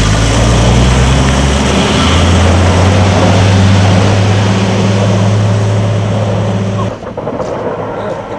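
Heavy gritting truck's engine running steadily under way, with loud road and spreader noise over it; the engine note changes about two seconds in. The sound cuts off abruptly near the end, leaving quieter traffic noise.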